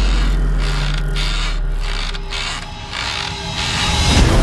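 Quadcopter drone giving about six short, ratchet-like mechanical whirs with brief gaps between them, under a low bass rumble that fades away.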